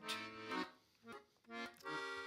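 Piano accordion playing a short instrumental fill: a held chord at the start, then a couple of brief chords after a short pause.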